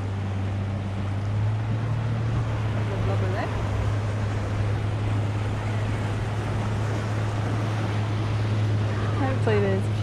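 A boat's motor running steadily with a low, even hum, over the rush of water and wind.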